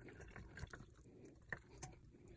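Near silence, with a couple of faint wet clicks from a gutted milkfish being handled over a steel sink.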